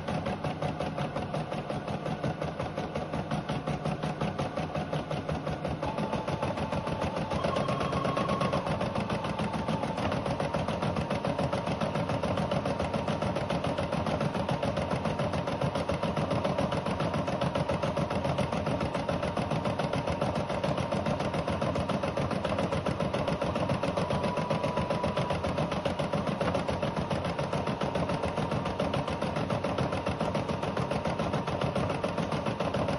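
Rosew ES5 embroidery machine stitching out a design: the needle bar runs at a fast, steady rhythm of stitches over the hum of its motor.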